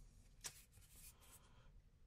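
Near silence, with one faint click about half a second in and a light rubbing after it as a small plastic weight is handled and set against the scale's lever.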